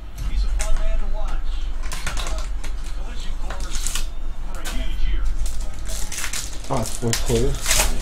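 Foil trading-card pack wrapper crinkling and rustling in the hands as it is torn open, in irregular crackly bursts over a steady low electrical hum.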